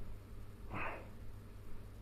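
A man's short, forceful breath, one audible exhale a little under a second in, part of a slow, even rhythm of breaths while he lies face down with his face against folded towels. A faint low hum runs underneath.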